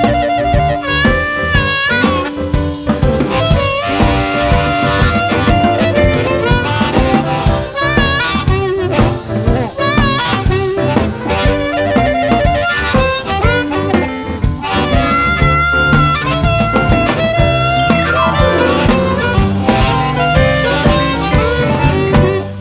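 Electric blues band playing an instrumental passage. A harmonica leads with bent, wavering lines over electric guitars, bass and a drum kit.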